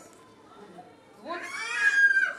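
A single high-pitched vocal sound that rises in pitch and ends on a held high note, lasting about a second near the end, after a quiet first second.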